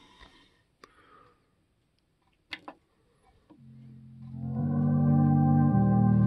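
A few faint clicks, then music from a CD playing on a Blackweb 100-watt Bluetooth stereo fades in about three and a half seconds in: slow, sustained chords that shift about once a second.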